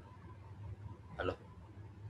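Mostly quiet with a low steady hum, broken just over a second in by a single short spoken word, a man's "Hello."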